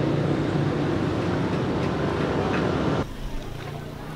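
Steady outdoor street noise with a low traffic rumble. About three seconds in it drops abruptly to a quieter low hum.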